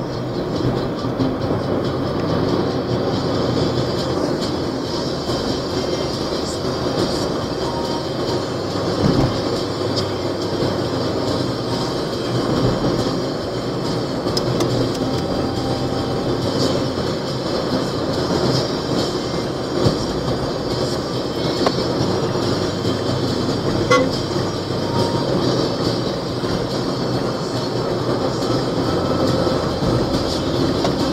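Steady engine drone and road rumble heard from inside a vehicle travelling at speed on a highway, with a few brief horn beeps.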